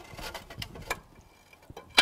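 Wooden front boards of a pallet compost bin being lifted out of their metal tracks: a few light clicks and knocks, ending in one sharp, louder knock.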